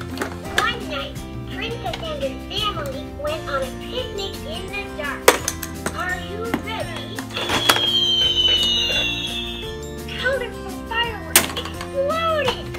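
Music with young children babbling and vocalising over it, and clatter from plastic toys: two sharp knocks, about five seconds in and near the end, and a falling whistle-like tone lasting about two seconds in the middle.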